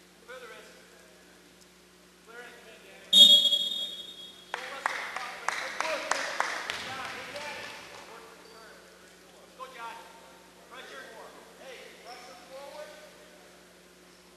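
Referee's whistle blown once, about three seconds in, a loud steady shrill tone lasting a little over a second that stops the wrestling action. It is followed by a few seconds of crowd voices in the gym, with sharp claps or slaps.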